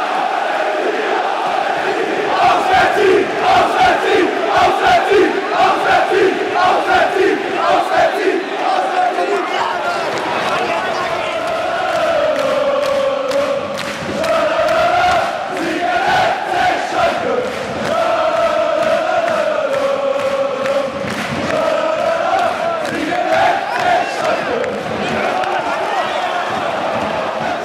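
A large block of football supporters chanting together. In the first part the chant is punctuated by rhythmic claps or shouted beats. It then moves into a longer sung chant with a rising and falling melody.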